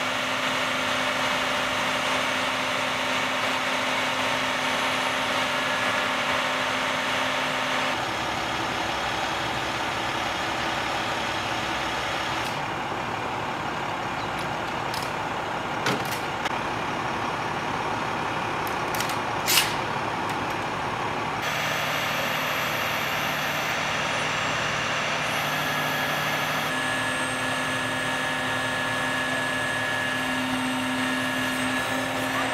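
Utility bucket truck's engine running steadily to power the raised aerial lift, with a couple of sharp clicks partway through.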